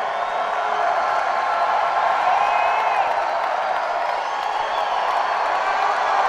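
Large arena crowd cheering, a steady din of many voices with scattered high whistles, heard from among the audience.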